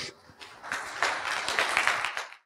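Audience applauding, a dense patter of many hands clapping that swells in about half a second in.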